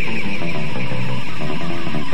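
Oi/street-punk band recording, an instrumental passage of guitar-driven rock with no singing, played at a steady, loud level.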